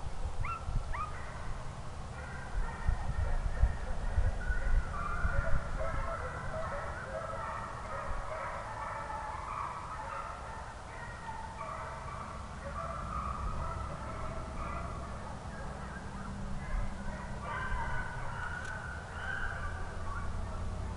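A pack of hounds baying, many voices overlapping without a break, with wind rumbling on the microphone.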